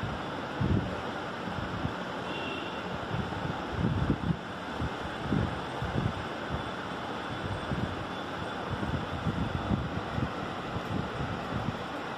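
Steady background hiss with irregular low rumbles of wind or handling noise on a phone microphone, several times a few seconds apart.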